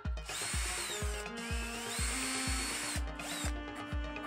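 Cordless drill boring holes into a plastic battery box, its whine rising and falling with the trigger in bursts. It pauses about a second in and stops shortly before the end. Background music with a steady beat plays underneath.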